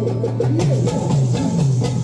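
Live band playing an instrumental passage: a keyboard melody with sliding, bending notes over a steady bass line and drum hits.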